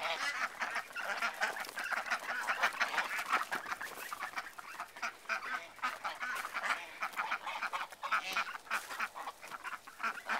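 A flock of domestic geese and Indian Runner ducks calling together, goose honks and duck quacks overlapping in quick succession without a break.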